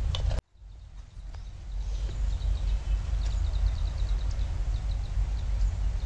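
Wind buffeting the microphone outdoors, a steady low rumble that cuts out briefly near the start. About halfway through, a small bird gives a rapid run of high chirps.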